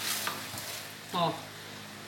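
Wooden spatula pressing and spreading a moist shredded-vegetable mixture in a glass baking dish, a wet scraping and squelching that fades after the first half second.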